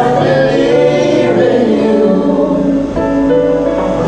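A woman singing a gospel worship song into a microphone over steady instrumental backing, with other voices singing along.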